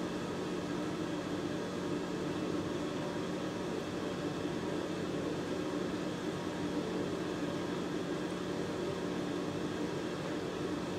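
Steady mechanical hum with an even hiss, like a fan running.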